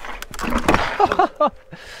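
Mountain bike rolling over rocks: a rapid run of sharp knocks and clatter from tyres, chain and frame hitting the rocky ground, mostly in the first second and a half, with a brief vocal sound from the rider about a second in.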